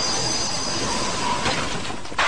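Anime battle sound effects: a loud, dense rushing noise with thin high-pitched tones over it in the first second.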